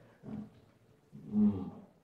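A man's voice making wordless hesitation sounds: a short one, then a louder, drawn-out 'uhh' whose pitch rises and falls about a second and a half in.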